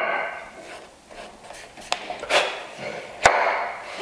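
Wooden pieces of a mitered half-lap joint handled and laid together on a wooden workbench: a few light knocks and rubs, with one sharp wooden knock about three seconds in.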